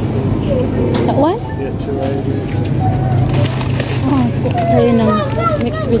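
Children's voices, high-pitched chatter and calls, over a steady low hum.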